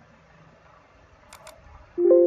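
A computer mouse double-click, two quick clicks close together about a second and a half in, over faint background hiss. At the very end a Windows alert chime starts as a warning dialog pops up.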